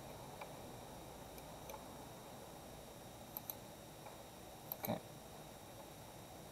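Faint room tone with a few quiet computer mouse clicks, two of them in quick succession about halfway through, as window corners are picked in CAD software.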